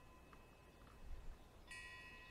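Near silence: room tone with a faint steady high hum. Near the end comes a brief, faint ringing of several high tones.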